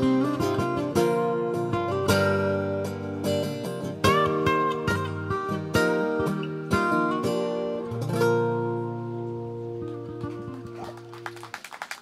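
Two acoustic guitars playing an instrumental passage of strummed and picked chords, then settling on a final chord about eight seconds in that rings out and fades. Scattered clapping begins near the end.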